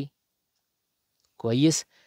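Mostly dead silence, broken about one and a half seconds in by a man's voice briefly reading part of an Arabic word.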